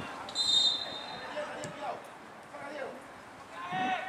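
A referee's whistle gives one short blast about half a second in, with players shouting on the pitch before and after it.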